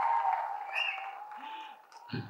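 Audience applause and cheering in a hall, with a steady tone running under it, dying away over the two seconds.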